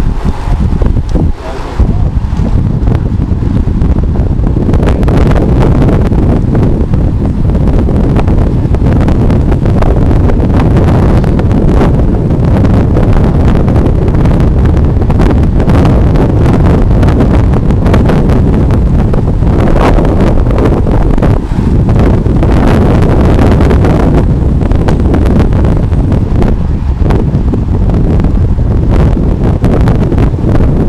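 Loud, steady wind buffeting the microphone of a road bike moving at speed in a pack of riders, a deep rumble with brief gusts.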